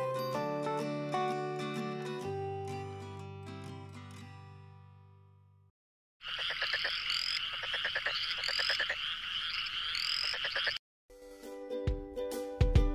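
Instrumental background music with held notes fading out over about six seconds. After a brief gap comes a rapid rattling call with rising chirps for about four and a half seconds. It cuts off, and tinkling, chime-like music starts near the end.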